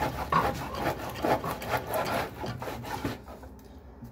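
Knife slicing raw beef on a cutting board: a quick run of sawing, chopping strokes, about four a second, that stops about three seconds in.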